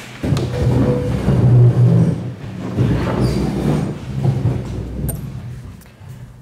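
Scraping, knocking and shuffling as several people get up from metal folding chairs, an irregular run of noise that fades out near the end.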